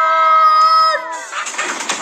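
Children's voices calling "Mr Tumble!" together, the last syllable held on one steady note for about a second. Then a hissing, crackling sound effect starts as he appears in a puff of smoke.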